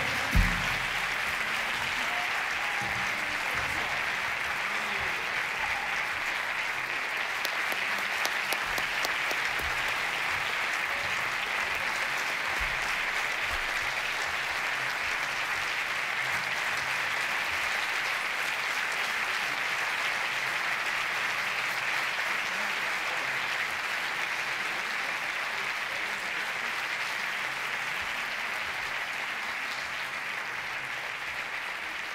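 Theatre audience applauding steadily and evenly after a live song ends, easing off slightly toward the end. There is a single thump just after the start.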